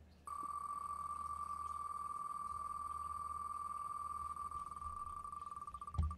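An online spinning name-picker wheel ticking as it spins. At first the ticks come so fast that they blend into a steady high buzzing tone. Near the end they slow into separate clicks as the wheel loses speed.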